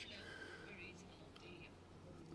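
Near silence: room tone with faint, distant speech.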